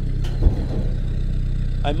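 Sherp all-terrain vehicle's diesel engine running steadily at low revs as the vehicle creeps along, with a single knock about half a second in.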